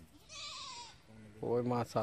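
A brief high, wavering call, followed about a second later by a man's short, louder vocal sound.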